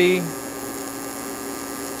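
Steady buzz of an AC TIG welding arc on aluminum, run on a triangle wave with the AC frequency still low, around 60 Hz.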